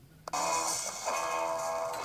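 Music from a weakly received analog TV broadcast playing through a portable TV's speaker. It cuts in after a short dropout at the very start, then plays steady held notes.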